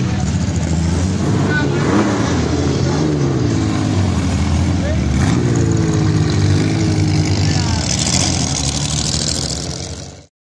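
Rally car engines running and revving as the cars drive past, with pitch rising and falling, mixed with the voices of onlookers.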